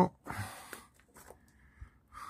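A short breathy exhale close to the microphone, followed by a few faint clicks and knocks as the camper van's hinged acrylic window, its support arms undone, is handled.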